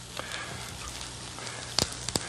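Tomato ranchero sauce sizzling steadily in a hot pan just after the tomatoes and tomato paste go in, with two light clicks, one just after the start and one near the end.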